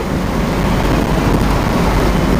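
Steady road and wind noise inside a Suburban cruising at highway speed: a loud, even rumble, heaviest in the low end.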